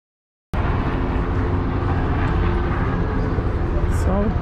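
Dead silence, then about half a second in, loud steady street noise cuts in abruptly: a heavy low rumble of city traffic with a faint engine hum.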